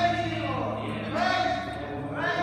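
A man singing a gospel song in long, held notes that bend in pitch, accompanying himself on acoustic guitar.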